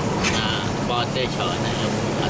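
Steady road noise heard from inside a moving car: a continuous low engine hum under a hiss of tyres on a wet road.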